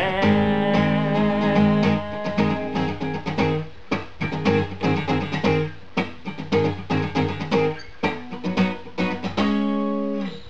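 Steel-string acoustic guitar strummed rhythmically in chords, playing the closing bars of a worship song and ending on a final chord held and left ringing near the end.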